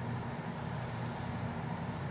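Felt-tip marker drawing lines on paper, a faint scratchy stroke about halfway through and a couple of short ticks near the end, over a steady low hum and hiss.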